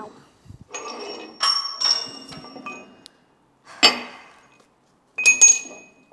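Heavy steel die cylinders being handled on a steel hydraulic-press bed: a run of scraping clinks, then a sharp metal clank with a brief ring about four seconds in and another ringing clank near the end.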